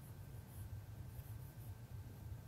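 Dry-erase marker writing on a whiteboard: a few short, high scratchy strokes, faint, over a low steady hum.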